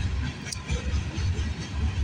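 Freight train of covered hopper cars rolling past: a steady low rumble of wheels on rail, with a single click about half a second in.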